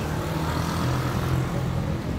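Steady low rumble of motor-vehicle engine noise from street traffic, with a low hum running through it.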